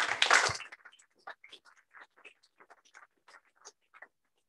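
Audience applauding in a lecture hall: a loud burst of clapping at the start, then scattered claps that thin out.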